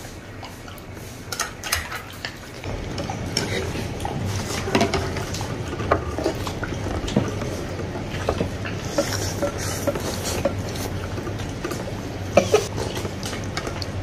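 Chopsticks and ceramic spoons clicking and tapping against ceramic soup bowls while eating, scattered light clinks with a few louder ones near the end. A low steady hum runs underneath from about three seconds in.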